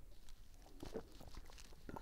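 Faint sounds of a man drinking beer from a glass: soft swallows about a second in, then a short knock near the end as the glass is set down on the bar.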